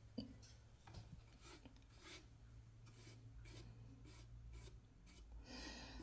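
Faint, repeated strokes of a paintbrush's bristles scratching over a painted wooden box, about two strokes a second.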